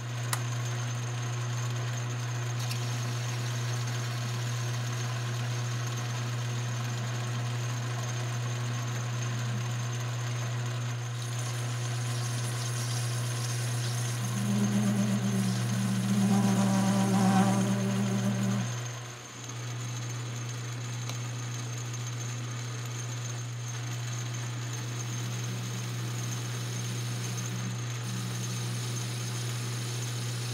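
Metal lathe running steadily, its motor and drive humming as it spins a brass bar. Around the middle, a louder pitched cutting sound lasts about four seconds as the tool faces off the end of the brass, then it falls back to the plain running hum.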